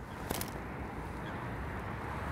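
A catapult's elastic released with a brief snap about a third of a second in, firing a ball of groundbait out over the water; otherwise a steady faint outdoor background of hiss and rumble.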